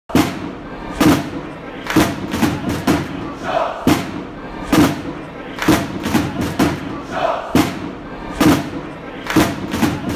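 Title-sequence music with a heavy drum hit about once a second, layered with crowd noise and shouting.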